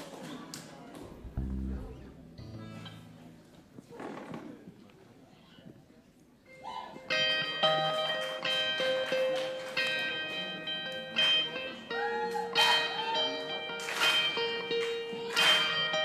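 A live band begins a song about six and a half seconds in: sustained chords ring out, joined near the end by a regular beat of hits about every second and a half. Before that the stage is quiet apart from a few low thumps.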